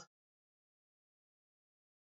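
Near silence: a dead-quiet pause in the studio talk, with no sound at all on the track.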